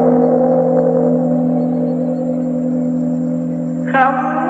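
A deep gong struck once, ringing on as a steady hum of several tones and fading slowly. Singing comes back in just before the end.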